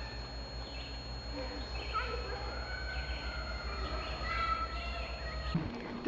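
Outdoor ambience of scattered bird chirps and faint distant voices over a steady low hum, cutting off just before the end.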